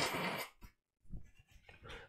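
A man blowing his nose into a tissue; the blow ends about half a second in.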